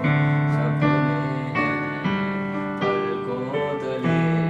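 Yamaha digital piano played with both hands in a broken-chord (arpeggio) pattern. The left hand holds the root and fifth of each chord, and the bass changes about every two seconds under the upper notes.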